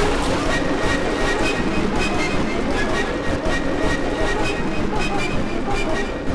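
A loud, dense jumble of several sound clips layered over one another: a noisy wash full of quick clicks, with faint steady tones running under it.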